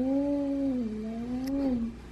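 A young child's voice humming one long, steady note that wavers gently up and down in pitch and stops near the end: a mouth-made engine noise for a toy car being driven out of its garage.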